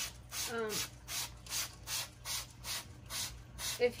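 Trigger spray bottle squirting soapy water onto window air conditioner coils: a steady run of short hisses, about two a second.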